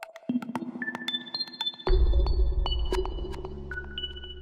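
Electronic TV-channel ident jingle: a quick run of short pinging notes at different pitches, then a deep bass hit about two seconds in, with the notes ringing on and slowly fading.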